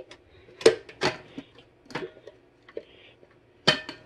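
A handful of sharp clicks and knocks as the parts of a Crock-Pot triple slow cooker are handled, the small crocks and their mounts being fitted onto the base; the loudest knock comes a little over half a second in.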